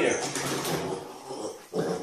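A mini pig grunting as it paddles through bathwater, with water sloshing around it.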